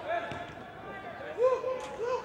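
Players calling and shouting across a large indoor sports hall, the words not made out. The loudest is a short pair of calls about one and a half seconds in.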